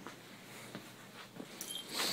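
A dog moving about on a wooden floor, its claws giving faint, scattered light taps.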